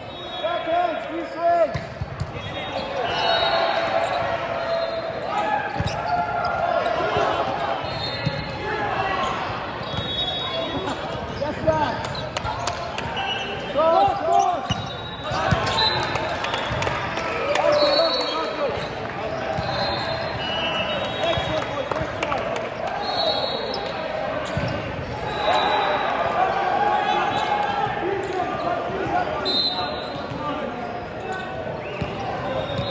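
Voices of players and spectators calling and shouting in a large echoing sports hall during an indoor volleyball rally. Sharp ball contacts and short high squeaks of shoes on the court floor come through the voices many times.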